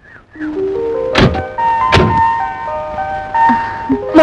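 Film background score: a run of held melodic notes stepping upward, with two sharp knocks about a second and two seconds in.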